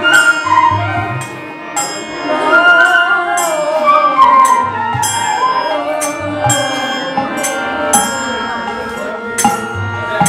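Bengali kirtan ensemble playing an instrumental passage: a violin carries a gliding melody over small cymbals struck in a steady rhythm and intermittent drum beats.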